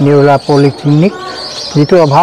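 A man speaking in short phrases, with a pause about a second in during which a bird chirps in the background.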